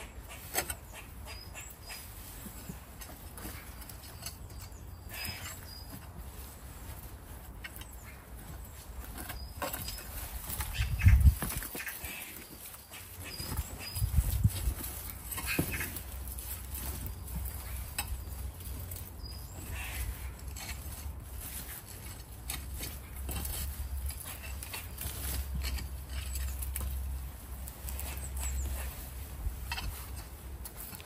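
Compost being dug and scraped out of the bottom hatch of a plastic compost bin with gloved hands and a hand trowel: rustling, scraping and small knocks, with two louder thumps about eleven and fourteen seconds in.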